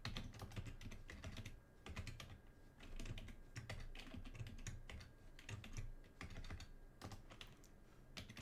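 Typing on a computer keyboard: a run of quick, irregular key clicks, fairly faint.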